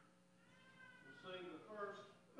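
Faint voices in the room: one drawn-out, high-pitched vocal sound whose pitch rises and then falls, followed by faint murmured speech near the end.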